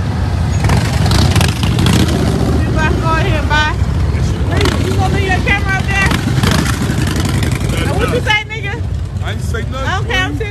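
Large touring motorcycles (baggers) rumbling as they ride slowly past, with people's voices over them. The low engine rumble drops away about eight seconds in.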